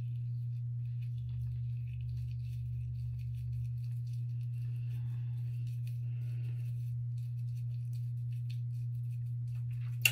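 A steady low hum throughout, with faint small rustles and clicks of hair being twisted by hand.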